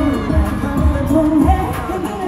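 Live K-pop song played through a concert PA: a woman singing into a microphone over a pop backing track, with a heavy bass kick about twice a second.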